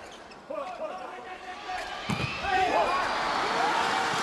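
A volleyball spiked once with a sharp smack about two seconds in. A large arena crowd then rises into cheering and shouting, with voices calling before the hit.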